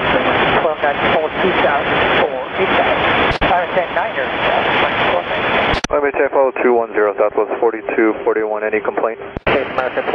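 Air traffic control radio chatter: voices over a narrowband, static-filled aviation radio channel, with a sharp click as each transmission starts, about three and a half, six and nine and a half seconds in. The transmission in the middle is clearer than the garbled, noisy ones around it.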